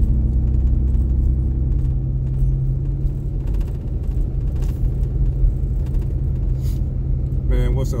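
Steady low engine and road drone of a moving car, heard from inside the cabin while driving.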